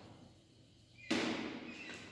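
Chalk writing on a blackboard: a quiet moment, then a sudden scratchy stroke about a second in that fades away.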